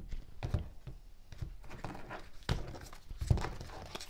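A deck of tarot cards being handled and cut on a wooden table: a few separate soft knocks and taps of the card stack against the wood.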